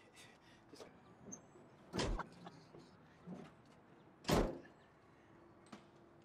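A sticking car door being yanked at its handle: two loud clunks about two and a half seconds apart, the second the louder, with small clicks of the handle between.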